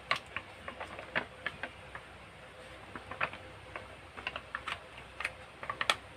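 Irregular small pops and clicks, a few a second, from a wok of tuna mixture simmering as tomato sauce is squeezed into it.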